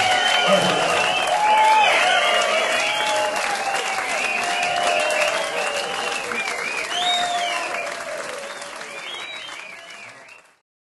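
Audience applauding and cheering with whoops and shouts just after the band's final chord, fading out near the end.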